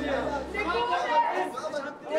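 Chatter of several overlapping voices from a group of men in a street scuffle. Steady background music underneath cuts off a little under a second in.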